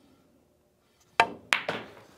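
Pool shot: the cue tip clicks against the cue ball, then about a third of a second later the cue ball clicks sharply into the object ball.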